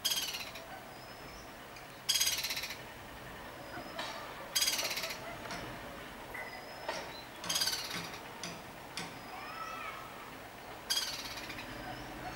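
Black-rumped flameback woodpecker giving its loud, high rattling call five times, each a rapid run of notes lasting about half a second and falling in pitch. The calls come every two to three seconds, with faint chirps between them.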